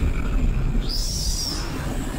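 Experimental electronic sound from modular and physical-modeling synthesis: a steady low rumble under a thin, high whistling tone that arches up and back down, starting about a second in.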